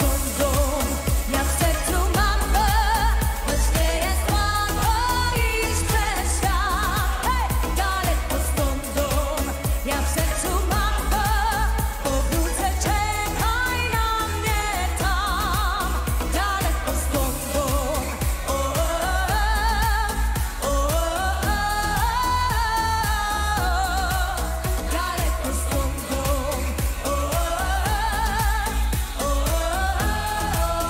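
Polish pop song with a woman singing long, wavering, ornamented vocal lines over a steady heavy bass.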